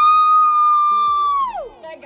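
A woman's long, high scream let out on a count of three, the pitch swooping up at the start, held steady, then falling away as it stops near the end.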